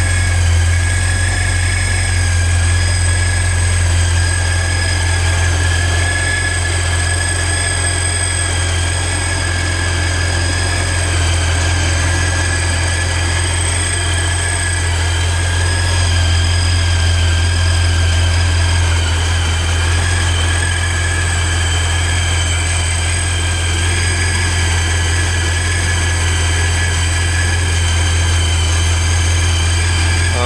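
Supercharged Porsche 928 V8 idling steadily, with a steady high whine over the low, even engine note. The engine is running really nice after the supercharger installation.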